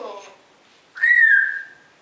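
African grey parrot giving one clear whistle of about a second, rising briefly and then settling a little lower and holding. It comes just after the end of a short word-like sound.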